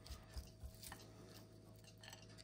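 Near silence, with a few faint, short taps in the first second over a faint steady hum.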